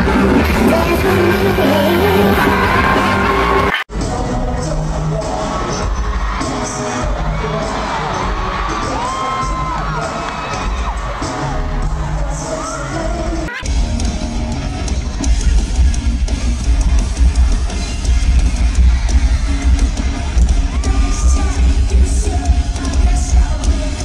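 Live concert sound: loud amplified music with singing and an audience yelling and cheering, in three clips spliced together with abrupt cuts about four and fourteen seconds in. Drums and electric guitar are strongest in the last part.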